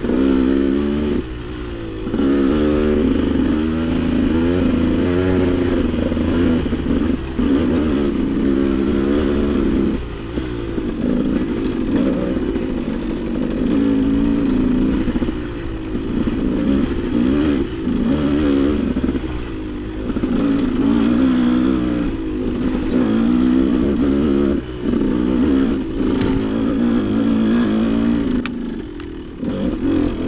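Dirt bike engine under way, its revs rising and falling continually as the throttle is worked over the trail. There are short dips where the throttle is rolled off, the deepest one near the end.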